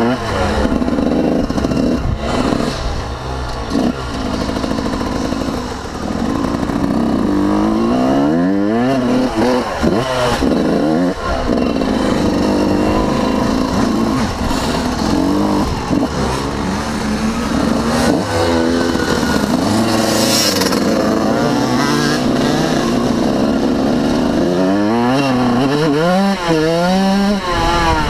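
Yamaha YZ125 two-stroke single-cylinder dirt bike engine heard on board while riding a trail, revving up and dropping back again and again as the rider throttles and shifts.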